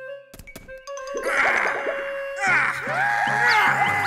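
Cartoon soundtrack: a few knocks in the first second over a held note. Then a busy stretch of music and sound effects with many sliding, wavering tones.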